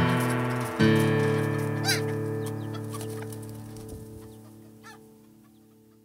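Acoustic guitar closing the track: a final chord struck about a second in that rings and slowly fades away. A few chicken clucks sound over it, around two seconds in and again near the end.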